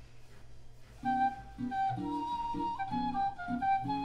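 Playback of a recorded improvisation: a flute melody of held notes moving in small steps over short plucked guitar notes, starting about a second in after a quiet first second.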